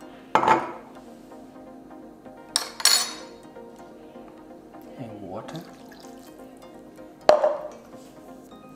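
Sharp metallic clinks of kitchen utensils against a stainless steel mixing bowl, each with a short ring: one about a third of a second in, a quick double clink near three seconds, and one about seven seconds in. Soft background music runs underneath.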